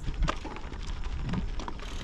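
Bicycle tyres rolling over a gravel road: a steady crackling hiss of small stones under the tyres, with a low rumble beneath.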